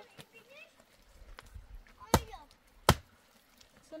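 Two sharp knocks, under a second apart, from hand work on a stone wall laid in mud mortar.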